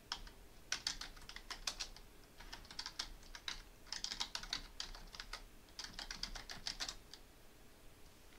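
Computer keyboard typing: several short runs of keystrokes, stopping about seven seconds in.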